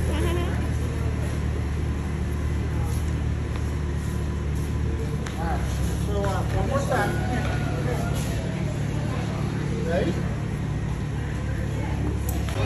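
Voices of a crowd over a steady low hum, with a few short voice-like calls around six to seven seconds in and again near ten seconds.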